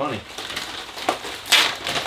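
Paper and cardboard mail packaging rustling and crinkling as it is opened by hand, with a louder crinkle about one and a half seconds in.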